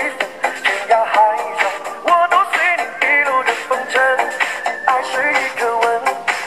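Pop dance music with a sung lead vocal over a steady beat, thin with little bass.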